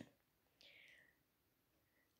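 Near silence: room tone, with one faint, brief hiss about half a second in.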